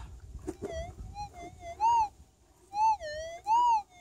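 Minelab GPZ 7000 metal detector's audio: a steady threshold hum broken by target responses, short tones that swell and bend up and down in pitch as the coil sweeps over the spot. The three loudest come about two, three and three-and-a-half seconds in. It is the sharpened signal of a buried target, which turns out to be a small flat gold nugget.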